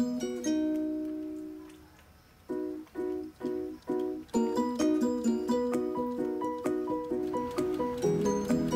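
Background music of light plucked-string notes. It dies away almost to silence about two seconds in, comes back as short plucked notes, and fills out with more notes about halfway through.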